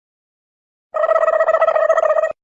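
Dead silence, then about a second in an electronic buzzing tone starts abruptly and holds at one steady pitch: the sound effect of an animated title card.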